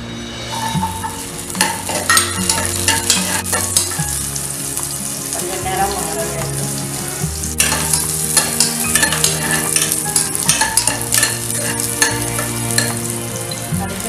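Oil and ingredients sizzling in an open pressure cooker on a gas stove, stirred with a metal spoon that clicks and scrapes against the pan.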